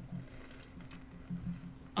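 A pause in speech: a faint, steady low hum over quiet low background noise.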